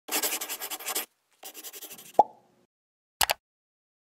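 Intro logo sound effects: a pen scratching on paper in two bursts of quick strokes, then a short falling plop a little after two seconds, and a quick double mouse click near the end.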